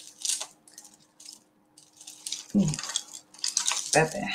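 Light metallic clinks and jingles of tangled jewellery chains being picked apart by hand, in several brief bursts.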